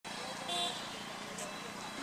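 Faint outdoor village street ambience, a steady low hiss, with a brief faint pitched sound about half a second in.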